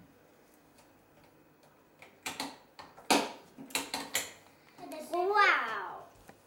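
Near quiet at first, then a few short sharp noises from about two seconds in, followed near the end by a child's drawn-out vocal sound that rises and falls in pitch.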